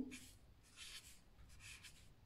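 Faint scratching of a felt-tip pen writing on paper, in about three short strokes.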